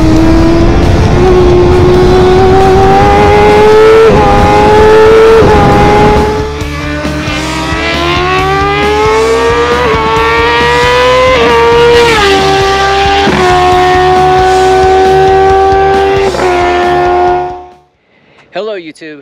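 Formula 1000 race car's motorcycle engine at high revs, its pitch climbing steadily and then dropping sharply at each upshift, several times over. Music plays underneath, and the sound fades out just before the end.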